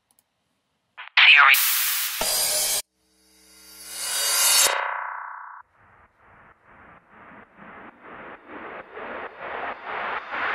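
Electronic FX samples being auditioned one after another. A bright crash-like burst of noise cuts off after about a second and a half, then a swelling reverse whoosh settles into a fading tone. From about six seconds a pulsing reverse FX loop, roughly two to three hits a second, grows steadily louder.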